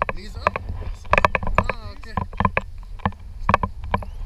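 Wind rumbling on the microphone in paraglider flight, broken by many short, irregular sharp sounds and a brief rising pitched glide about a second and a half in.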